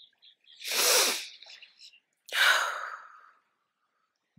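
A woman's deep breath in, then a sudden breath blown out that fades over about a second.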